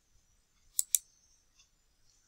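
Two quick, sharp computer mouse clicks about a second in, selecting an option from an open menu.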